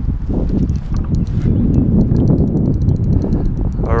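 A fishing reel ticking rapidly as a big catfish is fought on a hard-bent rod, over a steady low rumble.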